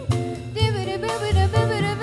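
Live jazz combo with female vocals: sung lines with vibrato over upright bass and band accompaniment.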